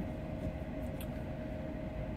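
Steady low hum inside a semi-truck's cab, with a faint constant whine running under it and one small tick about halfway through.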